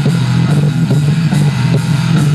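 Live rock band playing: electric guitars, electric bass and drum kit, with a sustained low bass note under a steady drum beat.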